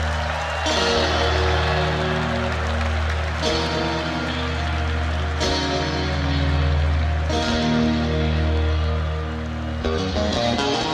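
A band playing an instrumental passage with no singing: sustained chords that change about every two seconds over a steady bass.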